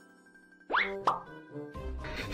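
Music with a slowly rising tone, then two quick cartoon plop sound effects, each a fast upward swoop, about two-thirds of a second and one second in. A burst of rustling noise starts near the end.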